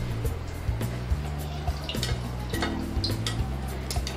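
Hot oil being scooped with a perforated skimmer and poured back over an appam deep-frying in a kadai, with a few light clinks of the skimmer against the pan. Background music with low steady notes plays throughout.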